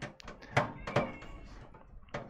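Irregular light clicks and taps of a screwdriver and small screws against the motherboard and the PC case's metal frame while motherboard screws are being fitted.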